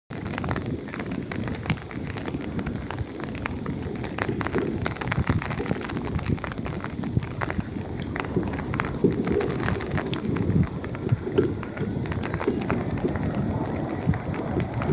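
Distant jet airliner rumbling along the runway, heard under heavy crackling wind noise on a phone microphone.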